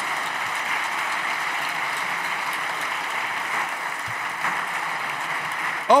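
Steady applause from a chamber of seated deputies, an even clapping noise that carries on as the speech resumes.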